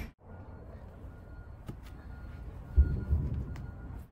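Quiet outdoor background with a faint steady high tone and a few light ticks, broken about three seconds in by a brief loud low thump and some rumble.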